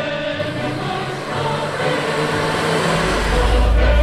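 Mixed choir and symphony orchestra performing a cantata, voices and instruments sustaining chords; a deep low rumble enters about three seconds in and the music grows louder.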